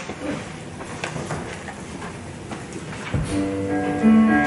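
Quiet room sound, then a soft thump about three seconds in, after which an electronic keyboard starts playing a hymn tune in held, sustained chords.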